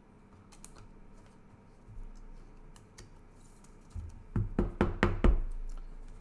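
A trading card being fitted into a rigid plastic top-loader and handled. A quick run of sharp plastic knocks and clicks comes a little after the middle, the last of them the loudest.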